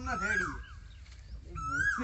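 A high-pitched whine, twice, each one rising and then falling, heard over a man's voice.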